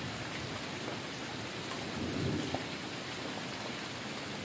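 Steady rain falling on the ground and pavement, with a brief low rumble swelling about two seconds in.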